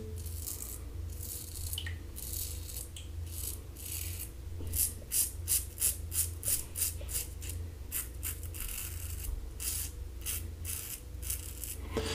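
Standard aluminum double-edge safety razor with a Kai blade scraping through two and a half days of lathered stubble in short, rasping strokes. The strokes are spaced out at first, then come about two to three a second through the middle.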